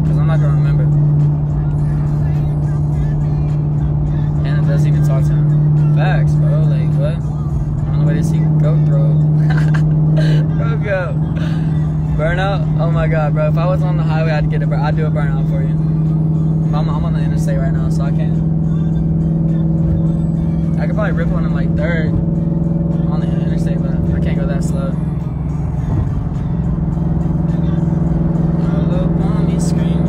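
Steady engine and road drone inside a moving car, with music carrying a singing voice playing over it.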